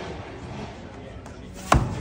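A single axe blow biting into a log in an underhand chop: one sharp, hard chop near the end, over a low steady outdoor background.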